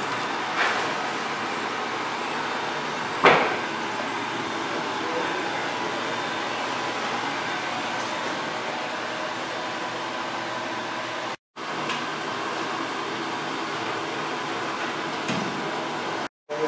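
Wood-chip stoker boiler plant running: a steady hum of its fan and feed-screw gear motors, with a sharp knock about three seconds in. The sound cuts out for an instant about two-thirds of the way through.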